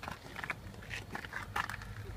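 Light handling noises in a car cabin: a scatter of soft clicks and rustles as a hand and phone brush against the interior trim while reaching under the dashboard, over a low steady hum.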